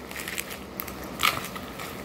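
Plastic bubble mailer being handled, crinkling and rustling in small crackles, with one louder rustle a little over a second in.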